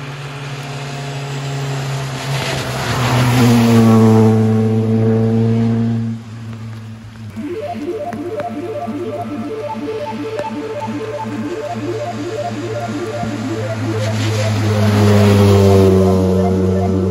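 Rally car passing at speed on a wet tarmac road: a rush of tyre spray and an engine note that falls in pitch as it goes by, about three seconds in, and a second pass near the end. Background music plays underneath throughout.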